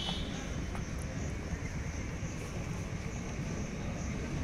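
Steady outdoor background noise: a low rumble with a thin, steady high hiss above it and a few faint ticks.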